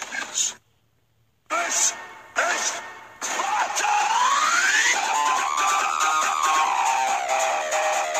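A man's voice in short bursts and then a shout, with loud music coming in about three seconds in on a rising sweep and carrying on steadily.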